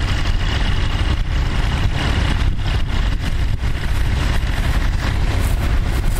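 Tractor engine running steadily under load as it pulls a mounted plough, a constant low rumble.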